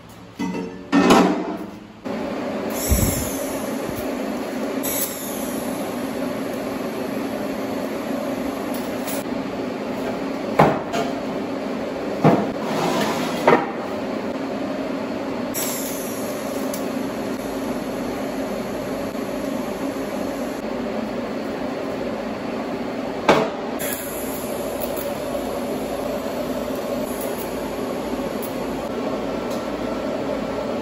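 A few loud clanks of steel I-beam sections being set down on a steel welding table. Then a steady hum from the TIG welding setup and its water cooler while the beam joint is welded, with a few sharp clicks along the way.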